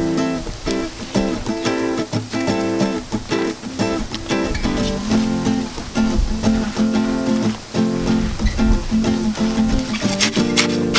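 Background music: an acoustic guitar picked and strummed in a steady rhythm.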